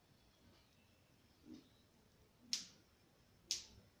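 Faint handling of bedding and a pyjama being folded, with two short, sharp snaps about a second apart in the second half.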